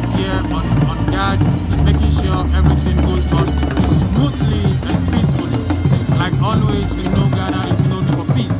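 Traditional hand drums played by a drum group in a busy rhythm, with voices mixed in.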